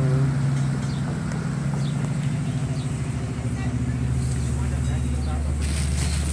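A steady low engine hum from an idling vehicle, with faint voices over it; the hum shifts to a deeper note about four seconds in.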